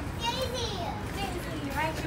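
A young child's high-pitched voice in two short wordless calls, the second falling in pitch, over a steady low background hum.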